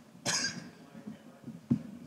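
A single cough in the audience about a quarter second in, over faint, distant talk, then a short sharp knock near the end.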